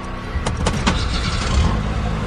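A car engine running as the car drives along the road, with a quick run of sharp clicks or knocks between about half a second and one second in.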